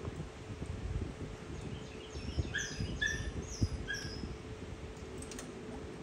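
A run of short, high, falling chirps or squeaks from small animals, several notes spread over about two seconds near the middle, over faint rustling and a steady low hum.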